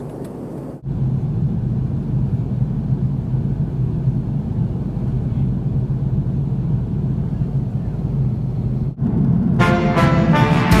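Steady airliner cabin noise from an Airbus A330 in cruise: a low, even drone with rushing air, which steps up in level about a second in. Music starts near the end.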